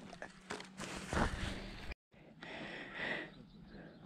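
Metal-bladed hand digging tool cutting and scraping into dry, crumbly soil as a hole is dug out, with loose earth crunching; the loudest scrape comes a little after a second in, and the sound breaks off briefly about halfway.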